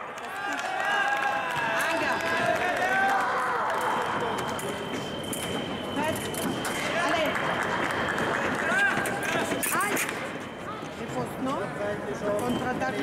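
Fencing hall ambience: voices and the fencers' footwork on the piste while they reset between touches.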